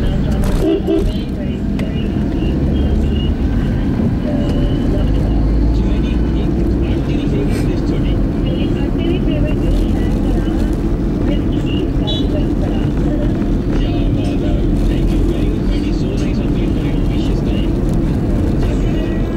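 Steady engine and road rumble inside a Maruti Swift's cabin while driving, with a car radio talking underneath.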